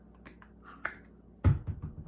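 A few faint light clicks from a loose plastic lid being handled on a small Play-Doh container, then a heavy thump about one and a half seconds in.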